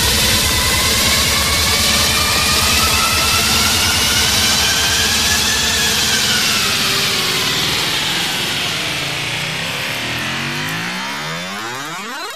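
Tech trance music in a breakdown: a synth sweep rises in pitch and then falls back, while the bass and beat thin out in the second half. It ends in a sharp pitch-bending sweep.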